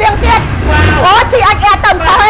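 A woman talking steadily, with a low rumble underneath.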